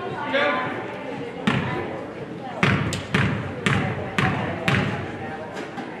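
A basketball bounced on a hardwood gym floor, about six bounces roughly half a second apart starting about a second and a half in, each echoing in the gym: a player dribbling at the free-throw line.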